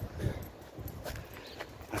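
A few soft footfalls on a pavement over a faint low street hum.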